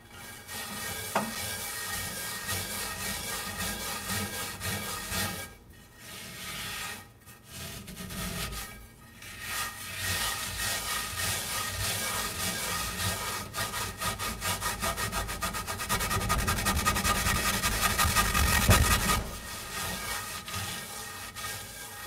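Coarse salt being scrubbed around a cast iron skillet with a green scrub sponge: gritty rubbing in back-and-forth strokes with a few short breaks. The strokes get quicker and louder later on, then stop about three seconds before the end.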